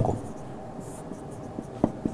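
Marker pen writing on a whiteboard: faint strokes with light ticks, and one sharper tap of the tip a little before the end.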